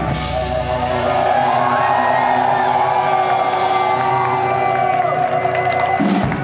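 Metal band's closing chord ringing out at the end of a song, the drums dropping away in the first second or so, while the audience cheers and whoops; the held sound stops near the end.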